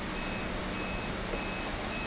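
Electronic warning beeper on heavy lifting machinery sounding short, high, even beeps about every 0.6 s, over the steady low hum of a running diesel engine.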